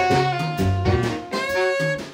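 Live saxophone ensemble playing improvised jazz: several saxophones hold notes together in harmony over a low line that steps in pitch.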